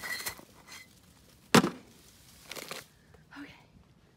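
Brief rustling and handling noises as the phone is carried past shrub leaves, a few short scuffs with quiet gaps between them.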